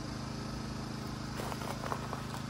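A small engine-driven generator running steadily at constant speed, a low even hum. A few faint clicks come in the second half.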